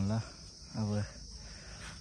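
Steady high-pitched drone of insects in the background, with two short vocal sounds from a man's voice near the start and about a second in.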